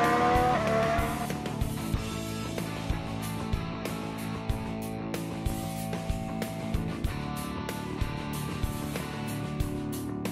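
A Ferrari Formula 1 car's turbocharged V6 engine, rising in pitch as it accelerates, fades out about a second in. Background music with a steady beat follows.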